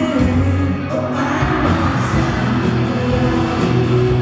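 A live pop band plays with electric guitar and bass under singing. A high, noisy swell of audience screaming and cheering rises about a second in.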